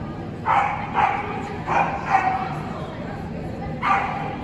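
A dog barking, five short barks spread across the few seconds, with the last near the end.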